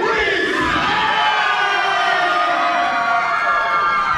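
Crowd giving one long collective shout, many voices held together and slowly sinking in pitch.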